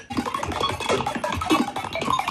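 Colour bass (melodic dubstep) track playing back, busy with rapid, quirky snare hits.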